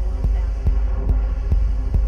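Hard trance music with the vocal dropped out: a steady four-on-the-floor kick drum at a little over two beats a second over a deep sustained bass.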